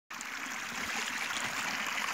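Water pouring steadily from the open end of a black plastic irrigation pipe and splashing onto muddy ground.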